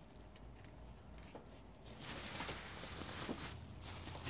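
Plastic bubble wrap rustling and crinkling under a hand handling a wrapped package, a scatter of small crackles, faint at first and louder from about halfway.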